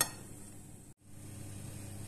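Near-quiet room tone with a faint steady hum, broken by a brief dropout to silence about a second in.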